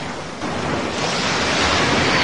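Ocean surf rushing, a wave washing in: the rush dips briefly at the start, then swells again about half a second in.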